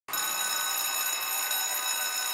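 Electric school bell ringing with a steady, high metallic ring.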